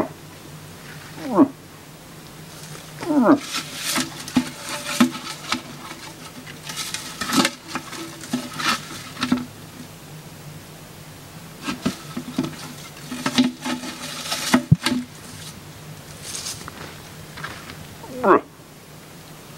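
A few short moose calls, each falling steeply in pitch, in the first few seconds, followed by scattered bursts of rustling noise.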